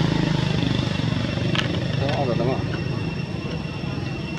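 A motor engine running at a steady idle, a low pulsing hum, with a short burst of a person's voice about two seconds in and a sharp click shortly before it.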